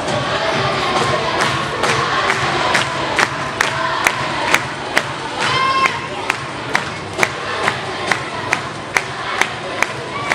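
An audience of children cheering and shouting over dance music, with a steady beat of sharp claps about two a second starting a little over a second in. One high drawn-out shout rises above the crowd a little after the middle.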